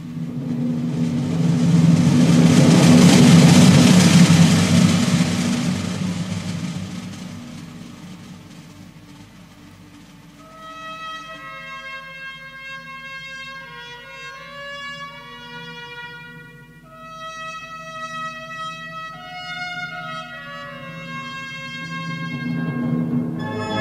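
Ceremonial military band music: a loud, rushing swell that peaks about four seconds in and dies away, then slow, sustained brass chords from about halfway.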